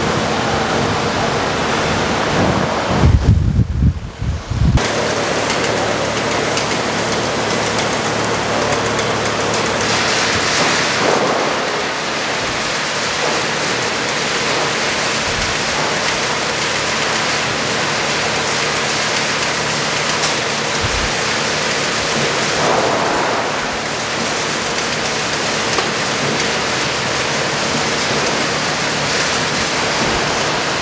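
Flexicon flexible screw conveyor and live-bottom hopper auger running and moving granular product: a steady rushing hiss with a faint hum. A few low thumps about three seconds in.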